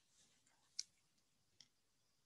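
Near silence with two short, faint clicks: a sharper one a little under a second in and a softer one near the end.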